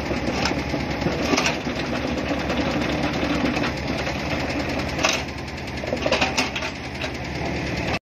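Yanmar mini excavator's small diesel engine running steadily as the machine works and slews, with several sharp knocks and clanks from the machine scattered through.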